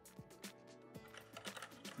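Faint, irregular small clicks and light clattering over a faint steady tone.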